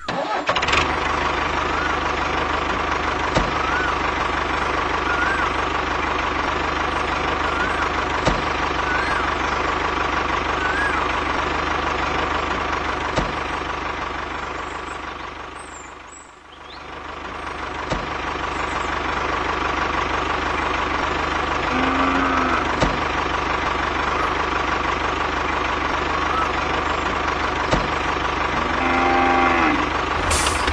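Tractor engine running steadily with a low, even drone. It fades down about halfway through and comes back up. A few short rising chirps sound over it in the first half.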